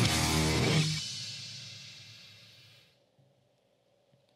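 Heavy rock track with distorted electric guitar and drums ending about a second in, its last chord ringing out and fading away over the next two seconds.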